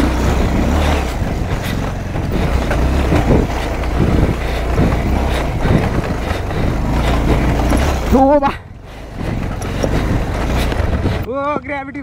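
Motorcycle engine running as the bike is ridden over a rough dirt trail, heard from a handlebar-mounted camera, with a dense rumble and frequent knocks and rattles from the bumps. A short shout comes about eight seconds in, and voices begin near the end.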